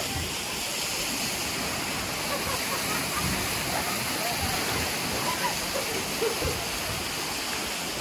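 Sea water washing around the rocks of a stony shore: a steady rushing hiss, with faint voices in the distance.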